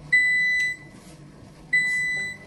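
Electric stove's timer beeping to signal that the hour is up: one long, high beep of about half a second, then another starting near the end.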